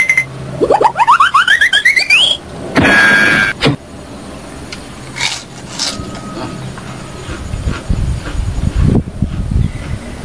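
A cartoon-style sound effect: a quick run of rising whistle-like sweeps, each starting higher than the last, then a short loud noisy burst about three seconds in. Near the end come low irregular crunches of chewing.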